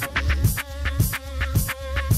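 Electronic hip hop track playing in a DJ mix: a steady drum beat with a held tone and a wavering, buzzing synth line over it.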